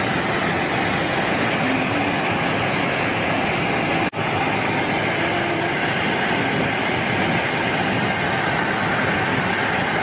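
Steady noise inside an aircraft cabin in flight, the engines and rushing air making an even, continuous sound. A brief dropout breaks it about four seconds in.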